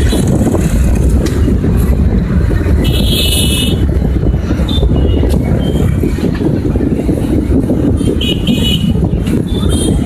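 Steady rumble of street traffic by a roadside, heavy in the low end, with short higher-pitched sounds about three seconds in and again near eight seconds.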